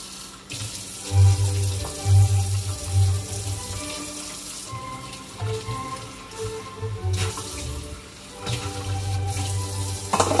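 Kitchen tap running into a sink while dishes are washed by hand, the water noise steady throughout.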